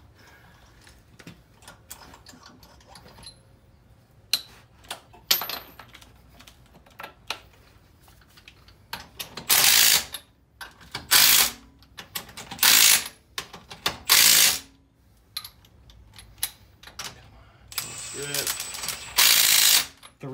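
Cordless impact wrench spinning lug nuts onto a car wheel in four short bursts of under a second each, then a longer run of about two seconds near the end. Before them come light clicks and clinks of nuts and socket.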